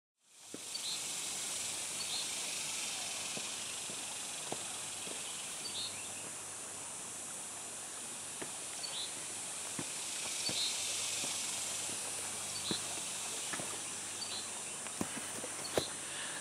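Outdoor ambience: a steady high-pitched hiss, a short chirp repeating about once every second or so, and scattered light footsteps on a dirt trail.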